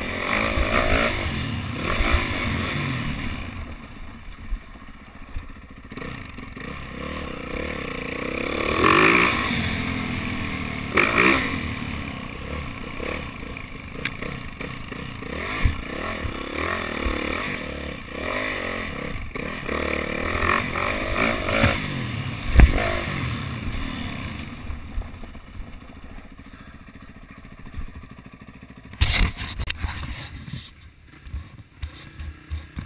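Dirt bike engine revving up and down as it rides over a rough dirt and gravel trail, with clattering and scraping from the bike over the ground. There is one sharp thump about three-quarters of the way through, and a short cluster of knocks near the end.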